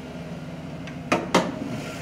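The 2010 Chevrolet Silverado's engine idling with a steady low hum, and two sharp clicks a little over a second in as the hood is unlatched and raised.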